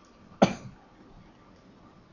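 A single short cough from a man about half a second in.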